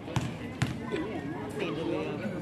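A basketball bounced twice on a hard court surface in the first second, as in a free-throw shooter's dribble at the line.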